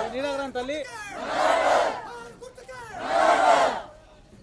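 A crowd shouting a slogan in unison, call and response. A single man's voice calls out, and the crowd answers with a loud shout, twice, about two seconds apart. The second shout cuts off just before the end.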